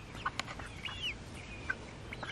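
Young chickens about two months old making a few faint, short, high calls, the clearest about a second in.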